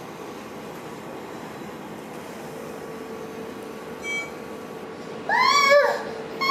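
Steady room noise, then near the end a toddler lets out a couple of loud, high-pitched squeals that rise and fall in pitch.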